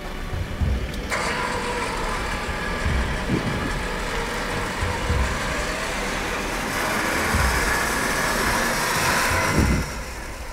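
Isuzu D-MAX's diesel engine running under load as the 4WD drives and is winched up and over a rock ledge, the sound coming in abruptly about a second in and staying steady, with occasional low thuds.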